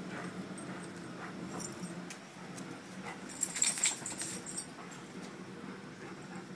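Two dogs playing and scuffling, with a brief burst of metallic jingling, like collar tags, about three and a half seconds in.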